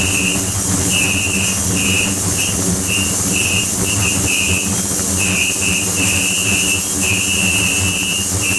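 Ultrasonic cleaning tank with 28 kHz and 72 kHz transducers running: a steady cavitation hiss with a high whistling tone that cuts in and out irregularly, over a low hum.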